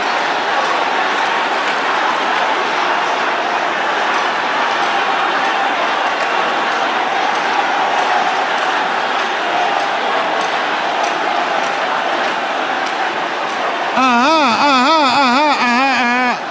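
A congregation praying aloud all at once, a dense mass of overlapping voices shouting the same prayer. About two seconds before the end, one loud voice rises above them on a long quavering, wobbling cry.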